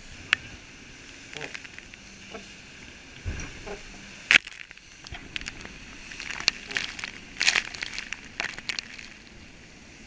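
Volvo Ocean 65 racing yacht under sail heard from on deck: a low steady rush of wind and water with many scattered sharp clicks and crackles, thickest in the second half and loudest a little past the middle.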